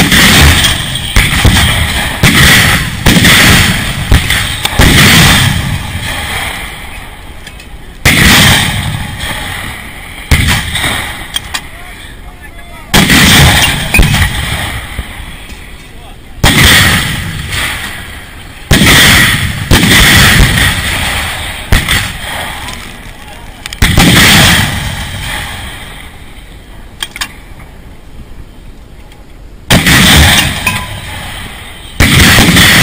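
Repeated heavy blasts of shelling, each a sudden loud boom that dies away over a second or two. There are more than a dozen, some a second apart and others separated by several seconds, with a long gap near the end.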